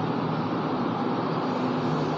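Steady background noise, an even hiss-like hum with no distinct events.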